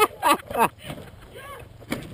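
A person near the microphone letting out loud excited shouts and laughs in the first second, over a low steady rumble, with a sharp knock near the end.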